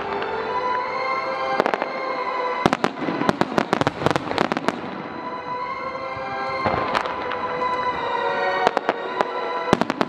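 Aerial firework shells bursting, with rapid strings of sharp crackling reports coming in two dense flurries, one around the middle and one near the end. Music with sustained tones plays underneath.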